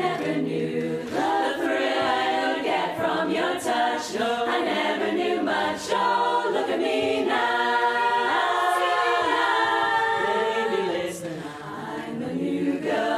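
Women's barbershop chorus singing a cappella in close harmony, holding and moving through sustained chords, easing off briefly near the end.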